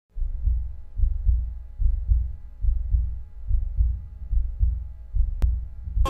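Heartbeat sound effect: deep thumps in pairs, repeating about every 0.8 s. A single sharp click comes shortly before the end.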